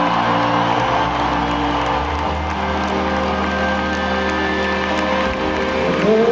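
Live arena concert music: held keyboard chords over a sustained bass note that shifts about two seconds in, with crowd cheering underneath.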